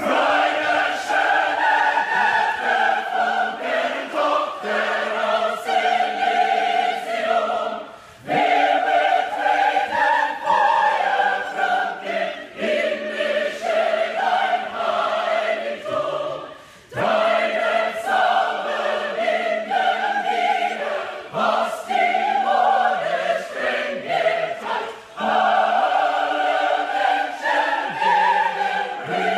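A choir singing a choral piece in long held phrases, with brief pauses about every eight seconds.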